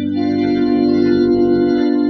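Organ holding one sustained chord, the close of its introduction to a congregational hymn.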